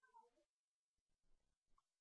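Near silence: faint room tone, with a brief faint pitched sound that falls in pitch at the very start.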